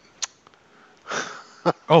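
A short, sharp sniff through the nose about a second in, after a single click; the word "oh" comes right at the end.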